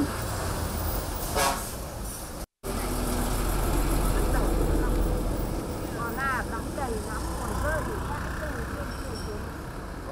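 Heavy laden dump trucks driving past on a road: a steady low engine rumble with road noise, louder for a few seconds after a brief dropout about a quarter of the way in. Faint voices are heard in the background near the middle.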